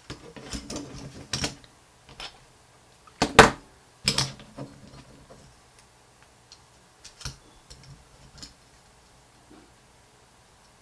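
Carbon fiber frame plates and arm clicking, knocking and scraping against each other in irregular bursts as the arm is worked into its slot between the plates; the loudest knock comes about three seconds in.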